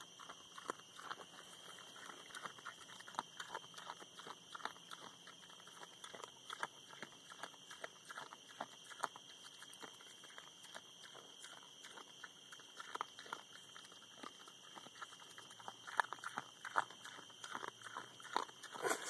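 Feral razorback hog eating shelled corn: an irregular, continuous run of crunches and chomps as she chews the kernels.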